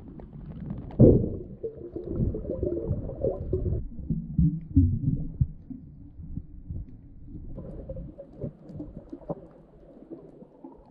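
Muffled underwater noise picked up by a camera submerged in the sea: low, irregular rumbling and sloshing of water against the housing, with a sharp knock about a second in.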